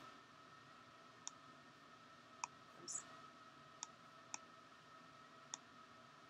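About six sharp, isolated computer mouse clicks, spaced unevenly half a second to a second apart, over near silence with a faint steady hum.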